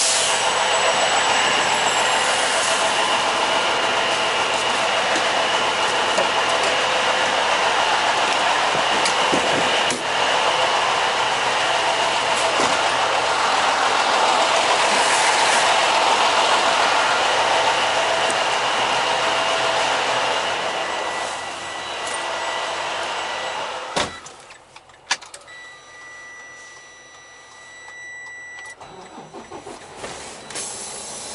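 Steady, loud running of idling diesel semi trucks at a truck-stop fuel island, a mix of engine noise with a couple of held tones. About 24 s in a truck cab door shuts and the noise drops away to a muffled background. A couple of knocks follow, then a steady high electronic beep that lasts about three seconds.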